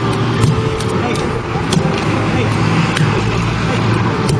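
Wooden kine mallet pounding steamed rice in a mortar for mochi, heard as occasional sharp knocks, over people talking and the steady rumble of road traffic.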